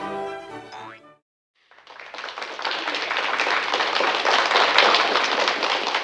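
Orchestral string music trails off about a second in. After a brief silence, a dense crackle of applause swells up and holds at a steady level.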